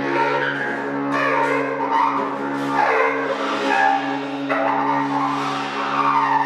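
Free improvised music: a steady low drone held under shifting, squealing, scraping sounds that swell and fade. The squeals come from a cymbal worked against a snare drum head.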